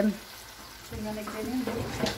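Diced lamb sizzling as it fries in sheep-tail fat in a wide steel pan, stirred with a wooden spoon. About a second in, a faint voice murmurs over the sizzle.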